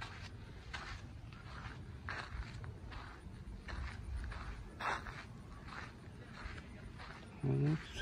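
Footsteps of a person walking at a steady pace on a paved path, a soft shoe scuff about every 0.7 seconds.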